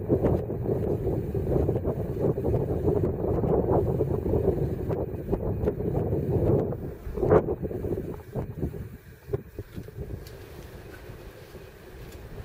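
Wind buffeting the camera microphone: a gusty, uneven rumble that dies down about two-thirds of the way through.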